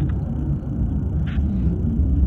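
A steady low rumble, with a short hiss about halfway through.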